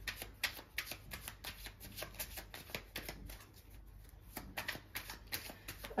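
Tarot cards being shuffled by hand: a quick run of soft card flicks and slaps, with a brief lull about two thirds of the way through.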